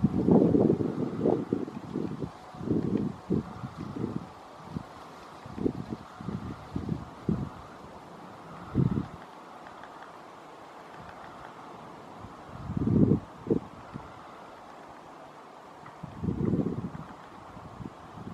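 Wind buffeting the microphone in irregular low rumbling gusts, thickest in the first few seconds and again near the end, over a steady faint hiss. No birdsong is heard.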